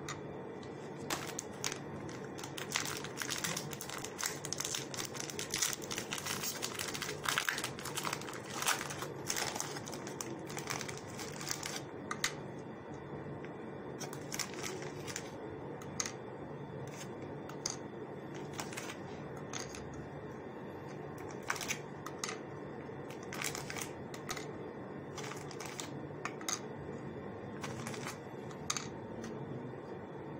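Dry biscuits being set one by one into a glass baking dish: irregular light clicks and taps of biscuit on glass, more frequent in the first half, over a steady low hum.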